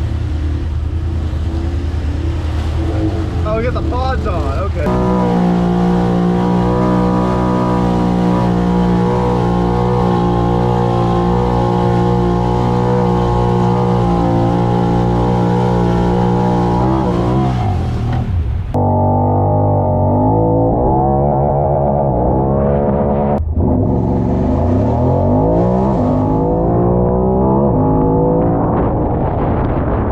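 Side-by-side UTV engine running at a steady pitch while driving through deep floodwater, with water splashing. About two-thirds through, the sound changes abruptly and the engine note then falls and rises with the throttle.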